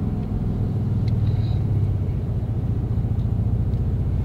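Steady low rumble of a 2019 Ford F-150's 3.5-litre EcoBoost twin-turbo V6, heard from inside the cab as the truck creeps forward at low speed.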